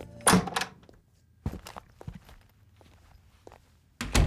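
A door shutting with a loud thunk about a third of a second in, then a few faint knocks and steps.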